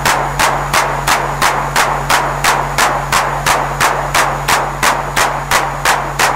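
Electronic music: a noisy, sharp-decaying percussion hit repeating evenly about three times a second over a sustained low bass drone.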